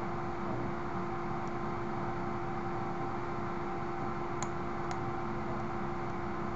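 Steady electrical hum and hiss of a computer recording setup, with two faint computer mouse clicks a little after four seconds and just before five.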